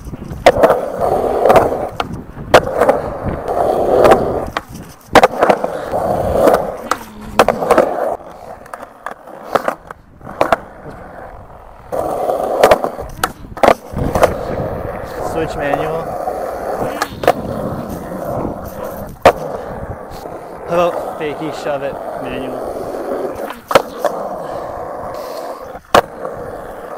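Skateboard wheels rolling on concrete, heard close up, broken again and again by sharp clacks of the tail popping and the board landing over a series of tries.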